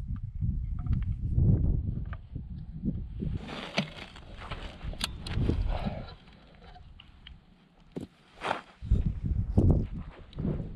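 Gusty wind rumbling on an action camera's microphone, with scattered clicks and knocks from a crossbow being cocked and handled. The rumble eases off between about six and eight seconds in, and a few sharper knocks come near the end.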